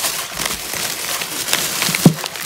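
Thin plastic shopping bag rustling and crinkling steadily as a hand rummages inside it among packets.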